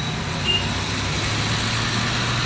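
A manual-gearbox car driving at speed on a highway, heard from inside the cabin: a steady low engine hum under even road and tyre noise.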